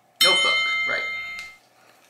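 A bright chime sound effect of several high, bell-like tones rings out a quarter second in and fades away by about a second and a half. It marks the handy dandy notebook appearing.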